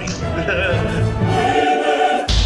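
Choral music with sustained, wavering sung voices over an orchestral bed, with a man laughing right at the start.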